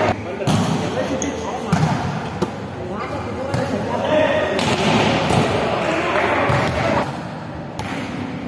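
Volleyballs being hit and bouncing on a hard indoor court, several sharp smacks a second or so apart, over players' voices in a large sports hall.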